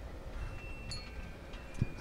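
A wind chime tinkling faintly: a few thin, high metallic notes ringing on and overlapping, with a soft thump near the end.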